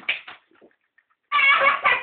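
Guinea pigs chewing a piece of cucumber held in a hand, with a few short, crisp crunches at the start. A little past halfway a loud, pitched voice-like sound begins and pulses rapidly, several times a second.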